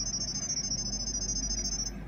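Smartphone IP-camera setup app sending the Wi-Fi details to the camera as a high-pitched warbling tone pair, which cuts off shortly before the end; a steady low hum underneath.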